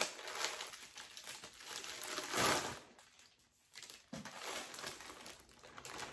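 Plastic packaging crinkling and rustling as a bag is opened and clear plastic-wrapped contents are pulled out. It comes in irregular bursts, loudest about halfway through, with a brief lull just after.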